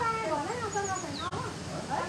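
People's raised, high-pitched voices exclaiming and calling out with no clear words, their pitch sliding up and down.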